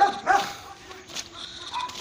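A dog barking, with a couple of short barks near the start and fainter sounds after.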